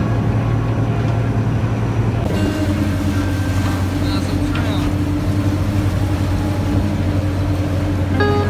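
Steady low drone of a shrimp trawler's engine, with water rushing and splashing alongside the hull from about two seconds in.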